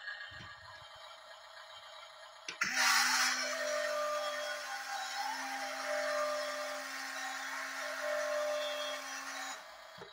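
Double E E590-003 RC dump truck's small electric motor starting with a click about two and a half seconds in and running steadily with a whirring hum for about seven seconds, then cutting off suddenly.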